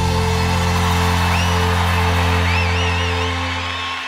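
Live band holding the final chord of a song, ringing out steadily, with an arena crowd cheering and a few whistles over it; it starts to fade near the end.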